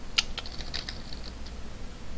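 Computer keyboard being typed on: a quick, irregular run of keystrokes as a line of code is entered.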